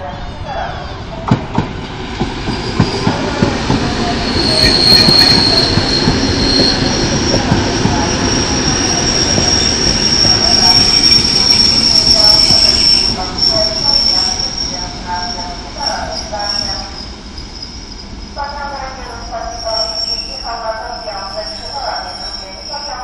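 EN57 electric multiple unit running slowly into a station, with a few sharp clicks from its wheels over the track in the first seconds. A long, steady, high-pitched squeal from the train runs through most of the passage and fades as it slows.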